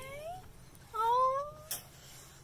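Nigerian Dwarf goat kid bleating twice, each call rising in pitch, the second longer and louder. A sharp click follows near the end.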